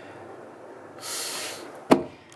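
A person's breathy exhale, a sigh lasting under a second, about halfway through, followed by a short sharp click just before the end.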